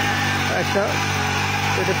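Small 63 cc four-stroke, air-cooled mini power tiller engine running at a steady speed while its tines dig into the soil.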